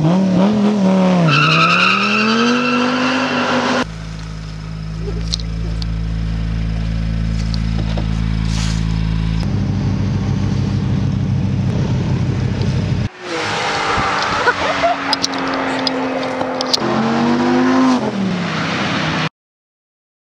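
Dodge Viper ACR's 8.4-litre V10 engine revving, its pitch rising and falling as the car is driven. It then runs steadily at a low pitch for several seconds and revs again after about 13 seconds. The sound cuts off suddenly shortly before the end.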